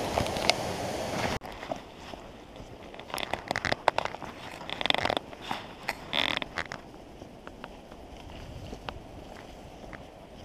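Rushing creek water, running high after a night of heavy rain, cuts off suddenly about a second and a half in. Then come footsteps crunching along a dirt trail, with scattered crackles and snaps of leaves and twigs, busiest in the middle.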